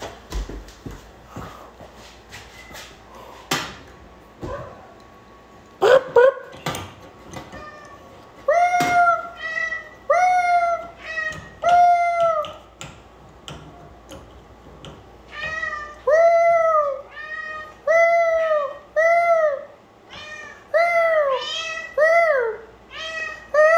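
A domestic cat meowing over and over, about one meow a second, each an arched call that rises and falls. The meowing begins about a third of the way in, after a few seconds of scattered knocks and clicks.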